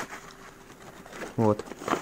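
Small cardboard firecracker box handled in knit gloves: faint rustling, with a light click at the start.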